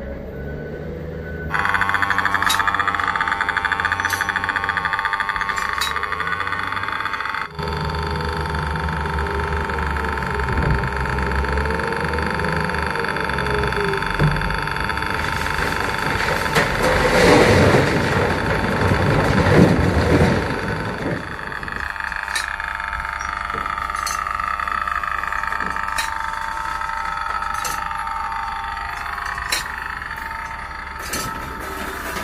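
Komatsu WA900 wheel loader working close by: its diesel engine and hydraulics run under load with a steady high whine over a low rumble. A little past halfway a bucketful of rock pours into a railway dump car with a loud rattling rush, and sharp knocks of rock on steel come now and then.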